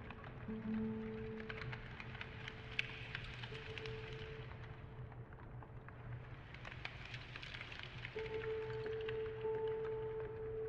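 Quiet ambient music: long held tones over a low hum and a steady fine crackling, rain-like texture, with a held tone swelling back in about eight seconds in.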